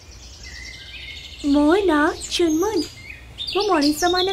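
Background birdsong of small birds chirping, with a character's voice breaking in about a second and a half in, its pitch rising and falling.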